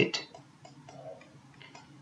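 Faint, scattered light ticks of a pen on a writing tablet as a word is handwritten.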